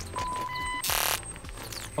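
Electronic intro sting of a channel logo animation: synth tones with a short burst of noise about a second in.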